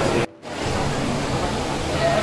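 Steady noisy hiss of a busy queue area with background music under it. The sound drops out briefly about a quarter second in, then returns.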